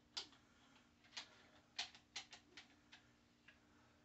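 Faint, irregular light clicks and taps, about seven in a few seconds, as Kobalt tongue-and-groove pliers (channel locks) are handled and set against the shop vac's plastic caster base. A faint steady hum lies underneath.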